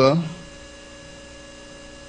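Steady electrical mains hum with several faint steady tones above it, after the tail of a man's spoken word in the first moment.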